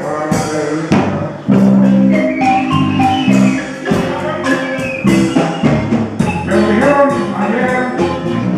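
Live marimba playing a melody of short struck notes over a low accompaniment with light percussion, an instrumental break with no singing.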